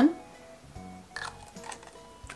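A person sniffs once, short and sharp, about a second in, over faint background music.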